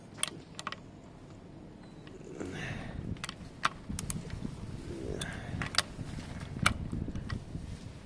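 Irregular metallic clicks and clinks of a socket and wrench on the crankshaft nut as a Triumph Bonneville twin is turned over by hand, nudged toward top dead centre for valve adjustment.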